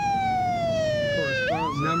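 Ambulance siren in wail mode: the tone falls slowly through the first second and a half, then sweeps quickly back up near the end.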